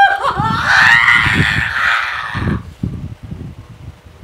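A woman screaming in distress: one long, high-pitched wail that rises at the start, is held for about two and a half seconds, then dies away.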